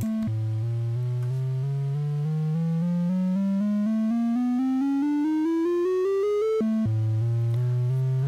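Befaco Even analog VCO playing a plain synth tone in even semitone steps, about four notes a second. A short reference note sits mid-range, then the notes climb step by step across about two octaves. Near the end the reference note sounds again and the climb restarts from the bottom. This is an automated tuning run checking the oscillator's volt-per-octave tracking.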